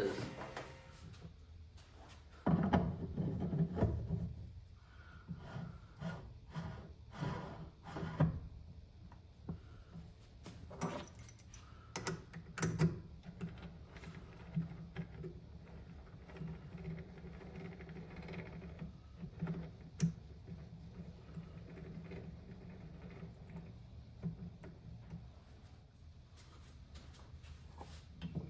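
Irregular knocks, clicks and rattles of metal parts being handled: a four-jaw lathe chuck being fitted and its T-handle chuck key working the jaws. The loudest cluster of knocks comes a few seconds in.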